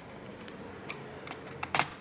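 A few light clicks of a screwdriver and screws against a laptop's plastic bottom cover as the screws are put back in. The loudest click comes near the end.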